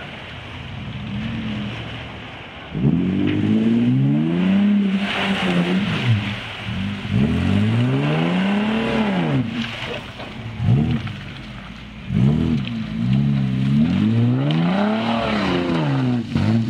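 Off-road 4x4's engine revving hard in repeated surges as it is driven over rough ground, the pitch climbing and falling again several times. It is quieter for the first couple of seconds, then the revs jump up about three seconds in.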